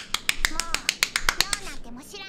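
Rapid hand clapping, about seven claps a second, stopping shortly before the end.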